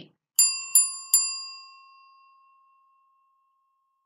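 A bell sound effect struck three times in quick succession, about a third of a second apart, each ring bright and metallic, the last one dying away over about two seconds.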